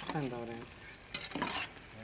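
Loukoumades (Greek dough balls) frying in a pot of hot oil with a steady sizzle, while a utensil stirs and turns them. A few brief scrapes against the pot come a little over a second in.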